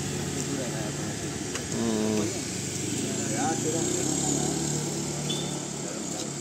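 Several people talking in the background, with the steady low running of a motorbike engine.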